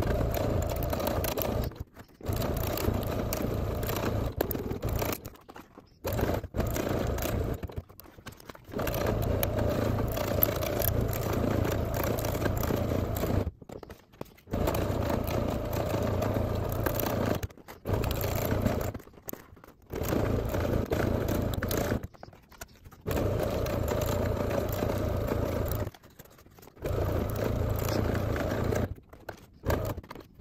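Electric sewing machine stitching a single straight line around the edge of a napkin-and-fabric envelope. It runs in stretches of a few seconds with short stops between them, about nine runs in all.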